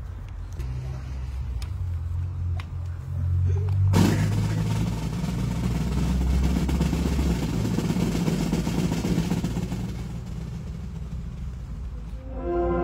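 Low engine-like rumble that suddenly swells into a loud, noisy rush about four seconds in and eases off after about ten seconds.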